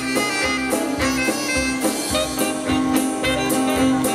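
Big band playing an instrumental swing jazz passage: a saxophone section over keyboard and drum kit with a steady beat.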